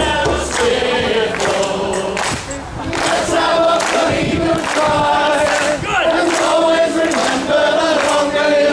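Many male voices singing a rousing Irish folk song together, backed by acoustic guitar and a hand drum keeping time.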